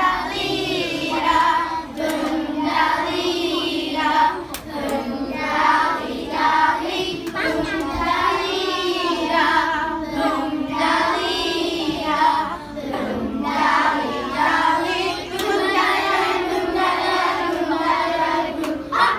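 A group of young children singing a song together, one melody line carried without pause through the whole stretch.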